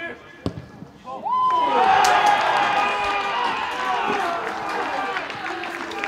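A football is struck once, and about a second later players and a small crowd break into loud shouting and cheering at a goal. The cheering peaks quickly and then slowly dies down, with scattered claps.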